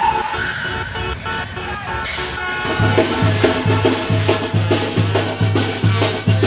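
Vehicle road and engine noise heard from inside a moving car, giving way about three seconds in to Latin dance music with a steady pulsing bass beat.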